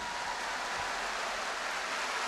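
Audience applauding steadily after the song has ended.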